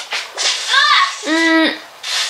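A person's wordless voice: a short rising-and-falling vocal sound, then a steady held tone of about half a second.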